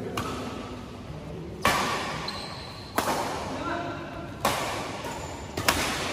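Badminton rackets striking a shuttlecock in a doubles rally: five sharp hits roughly a second and a half apart, each ringing out briefly in the large hall.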